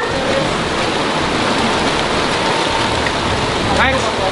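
Steady heavy rain falling.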